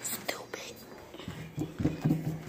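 Children whispering and talking in hushed voices, with a few rustles from the phone being handled at first.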